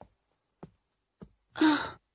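A short breathy sigh from a person near the end, after three faint soft ticks.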